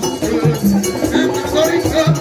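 Haitian Vodou ceremonial music: hand drums beating a steady rhythm with a metal bell and rattles, and voices singing over them.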